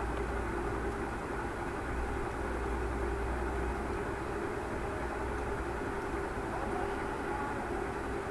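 Steady background hum and hiss with a faint constant tone, unchanging throughout.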